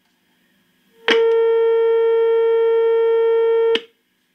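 Vegaty Mod. S.T.4 signal tracer's loudspeaker sounding a steady, buzzy test tone picked up by the probe at the plate of a tube stage. It starts abruptly about a second in and cuts off sharply near the end, as the probe makes and breaks contact. The tone comes through loud and clear, the sign of the stage's gain and of a working signal tracer.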